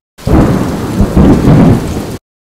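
A loud burst of rumbling, hissing noise like thunder with rain. It starts suddenly, swells a couple of times and cuts off sharply after about two seconds, as an added outro sound effect.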